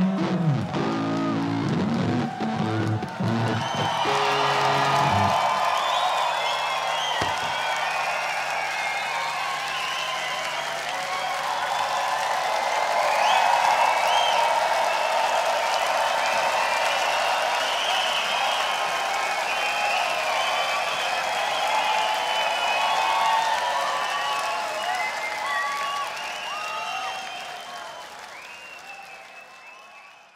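A rock band's electric guitar and bass play on for about the first five seconds and stop. A large festival crowd then cheers and claps, fading out near the end.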